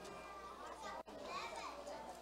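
Faint children's voices chattering and calling, high-pitched.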